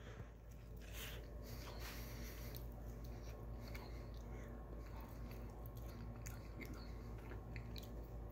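Faint chewing of a mouthful of soft steamed bao bun, with quiet, irregular mouth clicks and smacks.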